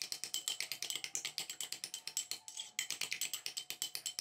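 Metal spoon clicking rapidly against a ceramic bowl as thick crème caramel is beaten in it, about ten light clicks a second with a short break about two and a half seconds in.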